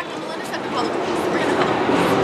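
Heavy street traffic close by, most likely an electric trolleybus passing, its noise rising steadily.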